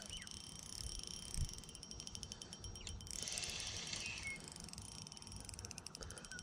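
Shimano Stradic 2500 spinning reel being wound slowly during a lure retrieve, a faint steady whir with fine ticking. A single low knock comes about one and a half seconds in.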